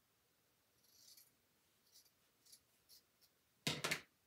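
Faint rustling of a long-haired faux fur strip being handled, then near the end a quick run of loud brushing strokes as the hair is combed upward to loosen it.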